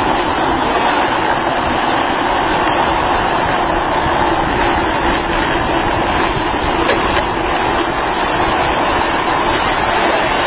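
Drift trikes running downhill on asphalt: a steady, loud roar of hard plastic rear wheels rolling and sliding on the road surface.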